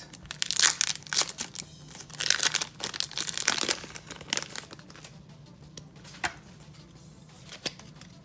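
Foil wrapper of a Pokémon trading-card booster pack being torn open and crinkled by hand, in loud crackling bursts over the first four seconds or so. After that it goes quieter, with two light clicks near the end.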